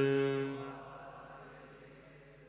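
A voice chanting Gurbani verse from the Hukamnama, holding one steady note that fades away during the first second, leaving a quiet pause between lines.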